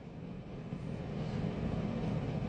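A faint, even background rumble with no clear tone, slowly growing a little louder.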